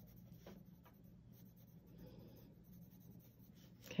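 Faint scratching of a red colored pencil shading on a paper card.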